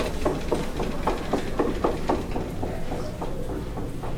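Quick footsteps on a hard floor, about four steps a second, over a steady low rumble; the steps thin out after a couple of seconds.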